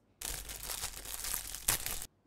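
A plastic bag crinkling as it is tied to a stick: a steady crackly rustle that starts just after the beginning, with a sharper crackle near the end.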